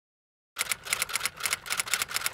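Typewriter sound effect: a quick run of sharp key strikes, about eight a second, starting about half a second in, as a caption types out letter by letter.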